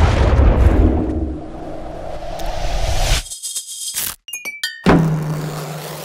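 Produced sound effects over music: a deep underwater rumble and churn of a plunge into a pool, cut off about three seconds in by a stuttering glitch transition with abrupt dropouts and clicks, then a low bass tone as the music comes back.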